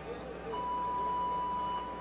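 Electronic start beep from the competition timing system: one long, steady tone starting about half a second in and holding for over a second, signalling the start of the heat, over arena hum.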